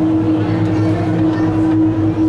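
Steady machinery hum of the cable car system: one strong unchanging tone over a low drone, with voices faint underneath.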